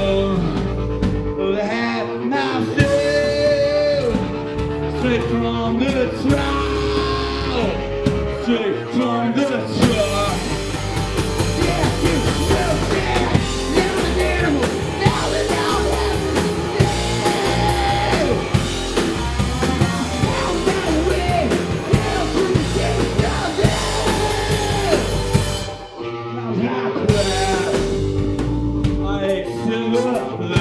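Live punk rock band playing electric guitar, drums and vocals. The first third is sparser, then the full band comes in with the cymbals hitting hard from about ten seconds in. There is a brief drop about four seconds before the end before the band carries on.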